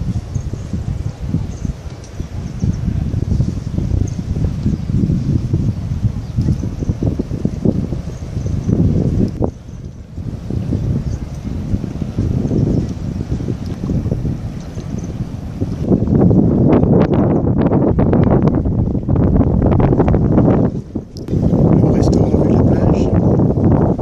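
Wind blowing over the camera microphone in irregular gusts, a low rumbling buffet that dips briefly twice and grows louder in the last few seconds.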